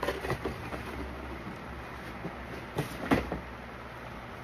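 Handling noise of shoes and shoeboxes being moved: a few light knocks near the start and a louder knock about three seconds in, over a low steady rumble.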